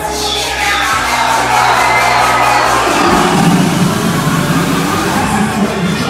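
Loud dance music with a steady beat, played over a sound system, with crowd noise and some cheering over it.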